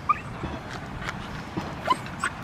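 A dog gives two short, high yips, one just at the start and a rising one near the end, over a walker's steady footsteps.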